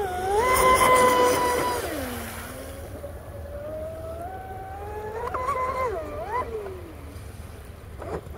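High-pitched whine of an RC speedboat's Spektrum 4685 1350KV brushless motor running at speed, the pitch dropping sharply about two seconds in, climbing back, then falling away near the end. The power cut is the speed control shutting off because the throttle was hit too hard.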